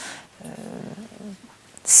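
A woman's long, drawn-out hesitation 'euh', a low steady hum of the voice lasting about a second, then the hiss of an 's' as she starts speaking again near the end.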